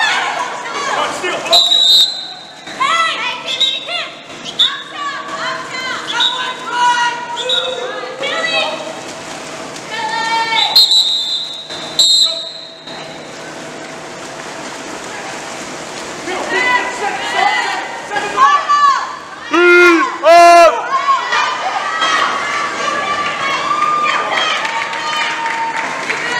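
Voices shouting and calling across an indoor pool during a water polo game, loudest in a burst of shouts near the end, with three short referee's whistle blasts, one about two seconds in and two close together in the middle.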